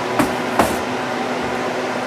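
Steady background hum with two short knocks in the first second, from the camera being handled.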